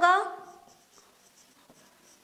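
A woman's spoken word trails off in the first half second; then the faint scratching strokes of a marker pen writing on a whiteboard.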